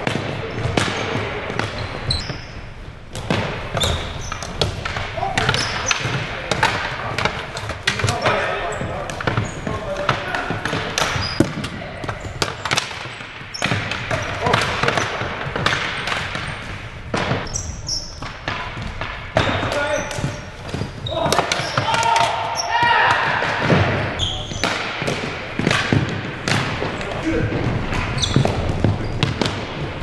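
Ball hockey play on a gym's hardwood floor: a string of sharp clacks and knocks from sticks striking the ball and the floor, and the ball bouncing, with players' voices calling out in the hall.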